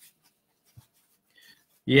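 Near silence, room tone on a call, with one faint brief low thump a little before the midpoint; a man's voice starts just before the end.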